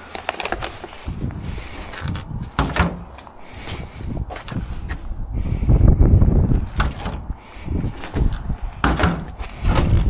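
Large plastic wheelie-bin lids being lifted and knocked, with scattered clunks and knocks throughout and a louder, dull rumbling stretch around the middle.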